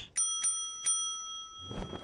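Brass front-desk service bell struck three times in quick succession, its bright ring carrying on and slowly fading after each strike. It is a call for attention at the desk.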